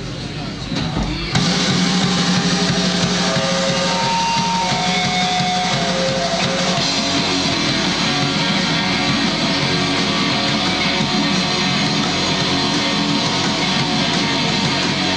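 Live rock band with electric guitar and drums crashing into a song about a second in, then playing on at full volume.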